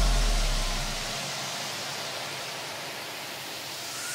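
A steady rushing hiss with no tune, under a deep bass tail that fades out over the first second; the hiss swells near the end.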